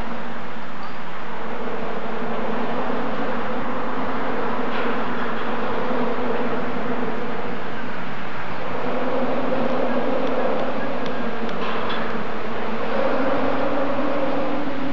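A steady, loud droning hum over a rushing noise, shifting slightly in pitch twice.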